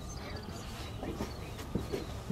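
Hoofbeats of two galloping racehorses on a dirt track: several dull, uneven thuds from about a second in, over a steady low outdoor rumble.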